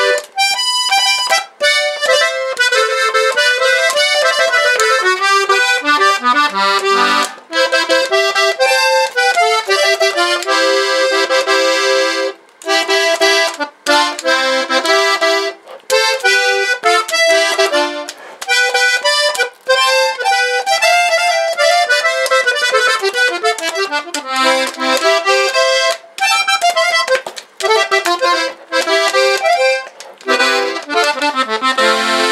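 Hohner button accordion playing a melody on swing-tuned reeds in G (Sol): the tremolo is toned down, halfway between the wet factory-style traditional tuning and a dry tuning. The tune runs in phrases with brief pauses between them.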